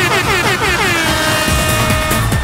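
A synthesizer effect in a dance music mix: a fast run of short falling pitch swoops, about six a second, that slow down and settle into a held tone about a second in. A beat comes in near the end.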